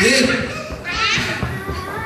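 Speech: a man preaching into a handheld microphone in a large hall.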